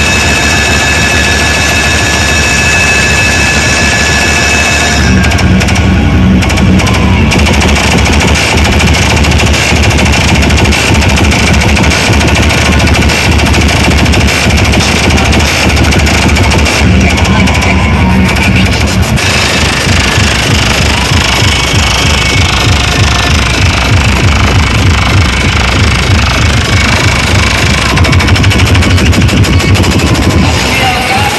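Loud DJ music from a truck-mounted loudspeaker stack, close to the speakers. For the first five seconds it is a steady high-pitched tone over the mix. Then a heavy, pounding bass beat comes in and runs on.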